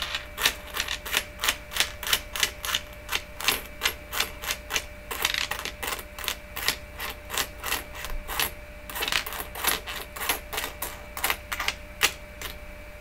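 Quarters clicking against each other and tapping down onto a wooden tabletop as they are slid off a stack one at a time and laid out in rows, several clicks a second.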